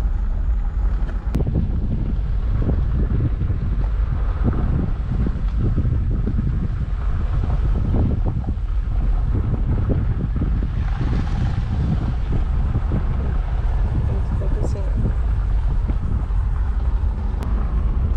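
Heavy wind buffeting on the microphone over the steady road rumble of a Jeep Wrangler driving along a gravel road.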